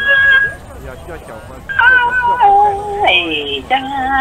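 A voice singing Hmong kwv txhiaj sung poetry: long, wavering held notes that step down in pitch, with a new phrase gliding up about three seconds in.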